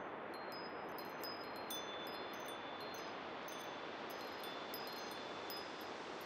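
Closing texture of an ambient track: a soft, steady wind-like hiss with sparse, high tinkling chimes scattered through it.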